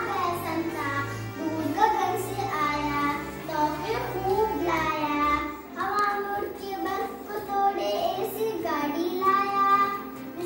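A young girl singing a song, her voice holding and bending through sung notes, over an instrumental accompaniment with low bass notes that change about once a second.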